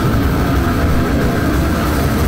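Goregrind band playing live: a loud, dense wall of distorted electric guitar and bass with drums, heavy in the low end and with little cymbal.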